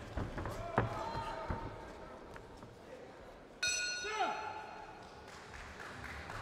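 Several padded punch impacts in a boxing bout, echoing in a large hall, with voices in the background. About three and a half seconds in, a bell rings sharply and fades away, signalling the end of the round.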